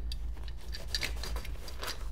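Handling noise from a paintball pistol magazine held against a nylon bag's magazine pouches: a few light clicks and fabric rustling.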